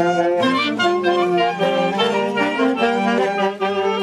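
Street band of saxophones and brass playing a pasacalle, with several horns carrying the melody together in held, changing notes.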